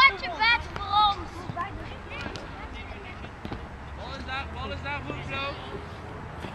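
Young children's high-pitched shouts and calls outdoors, in short bursts near the start and again about four seconds in, with a few dull knocks of footballs being kicked in between.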